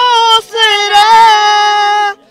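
A high voice singing a hymn in long held notes, with a short break for breath before the second long note.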